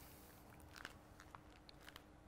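Near silence: room tone with a faint steady hum and a few small clicks.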